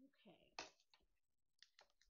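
Faint clicks and taps from hands working adhesive vinyl letters on a picture frame: one sharp click just over half a second in, then a few lighter ones near the end, after a brief quiet murmur of voice at the start.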